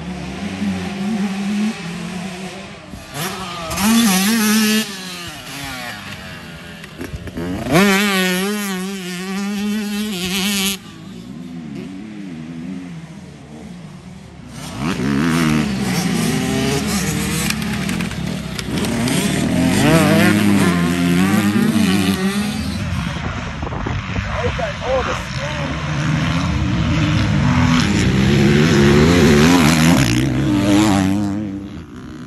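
Motocross dirt bike engines revving hard on a dirt track, their pitch climbing and falling again and again as the riders open and close the throttle; a bike passing close is loudest, with the nearest pass near the end.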